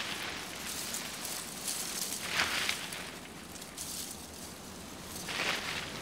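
Dry autumn leaves rustling, in a few louder swells.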